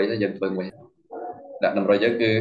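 Only speech: a man talking in Khmer.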